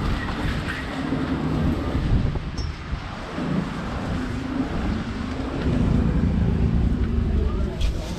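Street traffic noise with wind buffeting the microphone as the camera is carried along the pavement, and indistinct voices in the background.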